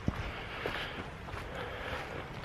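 Heavy breathing of a hiker out of breath after a steep climb, a steady hiss with a few soft ticks, the clearest just at the start.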